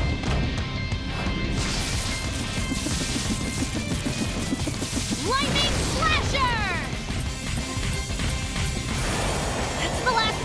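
Cartoon action soundtrack: dramatic music over a continuous heavy rumble and crashing impact effects, with a short run of gliding, shout-like sounds about five seconds in.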